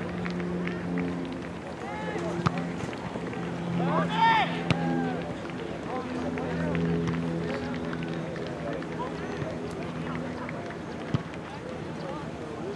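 Indistinct voices of players and spectators calling across a soccer field, with a louder shout about four seconds in.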